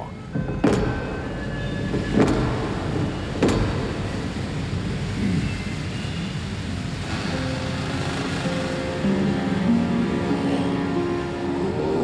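Three knocks on a heavy wooden door, about a second and a half apart, over a steady rush of falling water from a waterfall. Soft music with long held notes comes in during the second half.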